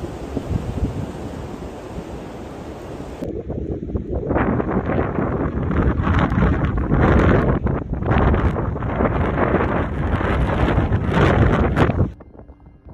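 Blizzard wind buffeting the microphone in gusts, growing louder from about four seconds in.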